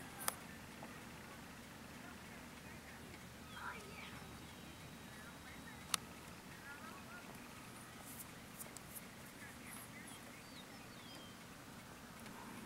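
Quiet outdoor background: a faint steady hiss with scattered faint bird chirps and a sharp click about six seconds in.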